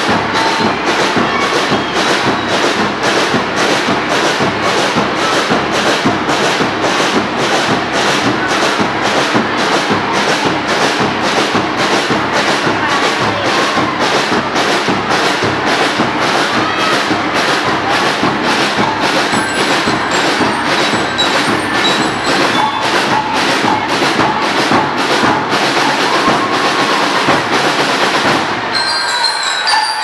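School marching band playing, drums keeping a steady, even beat of about two strokes a second, then stopping shortly before the end.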